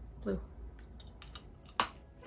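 A hard mini gumball being bitten: a few faint mouth clicks, then one sharp crack near the end. The word "blue" is spoken at the start.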